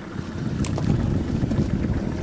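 Wind buffeting the microphone out on the open river: a steady low rumble.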